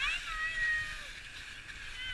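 A young child's high-pitched wordless squeal: it rises sharply, holds for about half a second and drops away about a second in, with a short second cry near the end.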